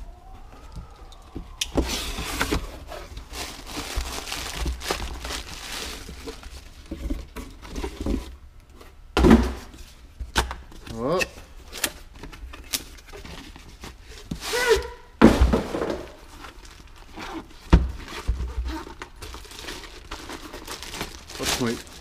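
A cardboard shipping box being cut open and unpacked: tape slit, flaps and an inner cardboard box opened, packaging and a plastic bag rustling, with several sharp knocks of the boxes on the bench.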